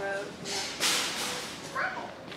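Indistinct speech, with a short rustling burst about a second in.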